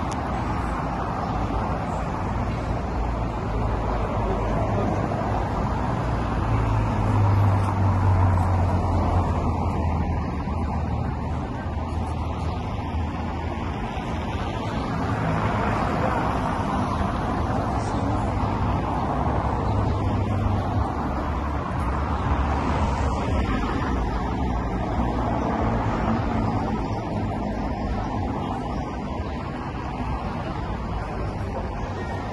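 City street traffic: cars driving past with a steady road noise, and a low rumble that swells about seven to ten seconds in.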